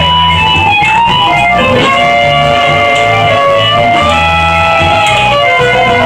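Live music at steady loudness: a violin melody of held notes over an amplified accompaniment with a repeating bass line.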